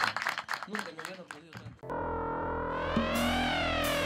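A sustained synthesizer chord begins about halfway through with a slow, swelling sweep up and down in its upper tones. It is preceded by a couple of seconds of scattered clicking and rattling with faint voices.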